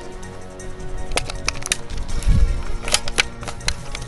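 Steady background music with scattered gunshots over it: a quick cluster of single shots in the second second, then another shot about three seconds in and a close pair near the end.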